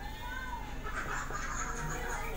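A domestic cat meowing, with pitched calls that rise and fall.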